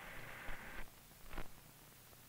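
Faint hiss of an old film soundtrack with two soft clicks, the first about half a second in and the second near one and a half seconds; the hiss drops a little lower just before the second click.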